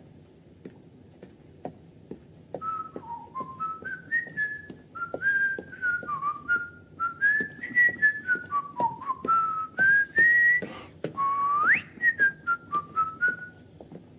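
A person whistling a tune: a single clear whistled melody that steps up and down from note to note, with one quick upward slide near the end, over soft taps.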